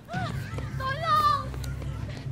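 A high-pitched human voice calling out in short cries that bend up and down in pitch, over a low background rumble.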